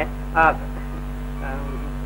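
Steady low electrical hum on the soundtrack, with a short spoken sound about half a second in and a faint voice around a second and a half.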